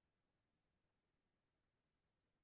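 Near silence: no audible sound.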